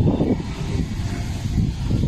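Wind buffeting the phone's microphone: a loud, uneven low rumble.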